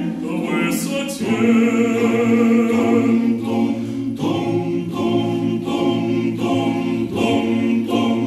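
A choir singing a cappella in sustained chords, moving to a new chord about once a second.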